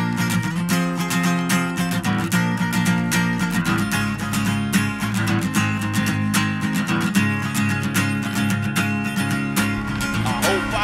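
Acoustic guitar strummed in a steady rhythm, chords ringing under each stroke, with no singing.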